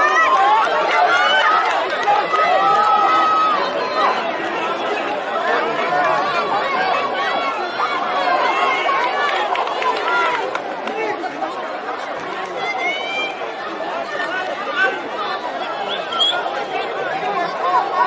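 Rugby spectators shouting and talking at once, many voices overlapping into a steady din, loudest in the first few seconds.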